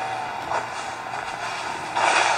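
Audio of an anime episode playing: a steady noisy wash with no dialogue, with a small swell about half a second in.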